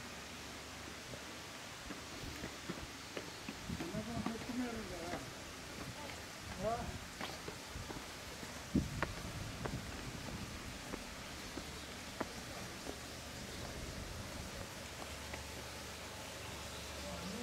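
Indistinct voices of people talking at a distance, in short stretches, over a steady background hush. Scattered sharp clicks and knocks, the loudest about nine seconds in.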